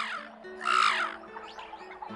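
A single harsh, croaking squawk about half a second in, as a toucan's call, over soft background music.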